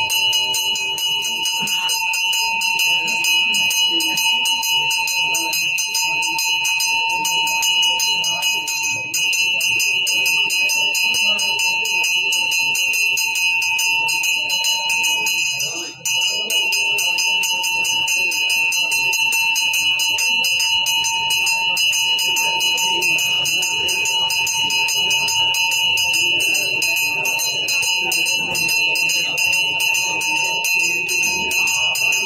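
Brass temple hand bells rung rapidly and without pause, a dense, steady clanging ring with a brief break about halfway through.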